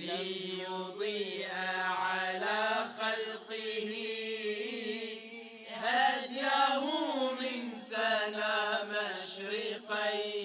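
A male vocal group singing an Islamic devotional nasheed in long, ornamented held notes over a steady low sustained note, swelling louder about six seconds in.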